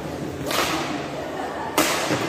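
Two badminton racket strikes on a shuttlecock, a little over a second apart, the second sharper and louder, over a steady murmur of spectators.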